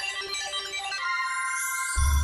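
Apple Daily news logo sting: a short electronic jingle of bell-like chime notes, settling about a second in into a held chord with a high shimmer over it.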